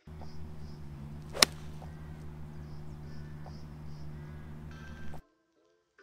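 A five iron striking a golf ball off fairway turf: one sharp click about one and a half seconds in.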